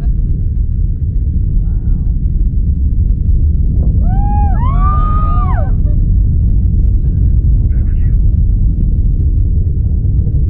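Falcon 9 rocket's first-stage engines heard from a distance during ascent as a loud, steady low rumble. About four seconds in, a voice gives a few rising-and-falling whoops over it.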